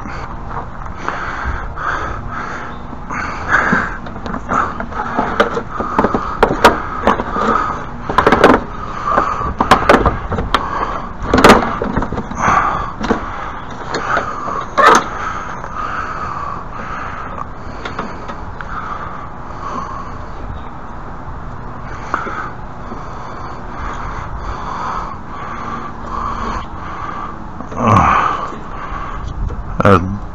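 Repeated clunks, knocks and scrapes from a push lawn mower being handled and shifted about, over a steady background hum.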